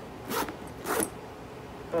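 Metal zipper of a denim Speedy handbag being pulled in two short strokes, about half a second and one second in, as it is worked to check that it is not faulty.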